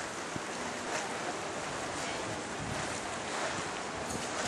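Steady rushing wind buffeting the microphone, with a few faint ticks.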